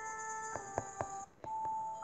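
Soft background music from the story app: held notes with a few light struck notes, dropping out briefly a little past the middle before a new held note comes in.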